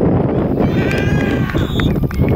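A spectator or player gives a long, high-pitched shout across the soccer field, over a steady low rumble of wind and field noise. A brief high tone follows near the end.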